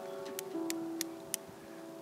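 Solo piano playing slow, held notes. Over it come four light, sharp taps about a third of a second apart: a hammer tapping a small metal maple sap spout into the tree.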